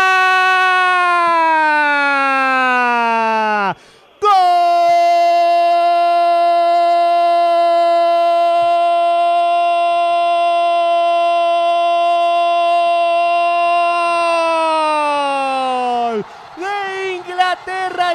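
A football commentator's long, held "gooool" goal cry in Spanish: a first held shout falling in pitch for about four seconds, a quick breath, then a second held cry that stays level for about ten seconds before sliding down in pitch.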